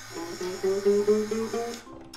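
A newly fitted ukulele C string, plucked and ringing while a motorized smart tuner winds its peg, so the note slides slowly upward as the string is brought up toward pitch. The tuner's motor hums underneath and stops shortly before the end.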